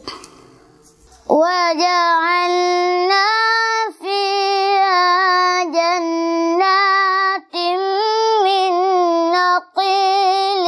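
A boy reciting the Quran in a melodic tajwid chant, drawing out long held notes in phrases separated by short breath pauses. The first second or so is a quiet pause before the chant resumes.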